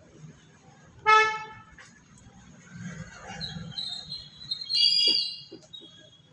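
A short, horn-like toot about a second in, then a second, higher-pitched tone lasting about half a second shortly before the end.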